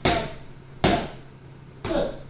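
Boxing gloves striking focus mitts: three sharp smacks about a second apart.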